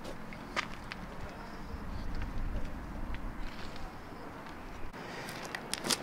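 Faint footsteps on a stone-paved path, a few irregular steps over a low steady rumble.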